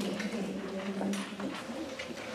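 A person's low, drawn-out murmur, held for about a second and a half, with a couple of light clicks.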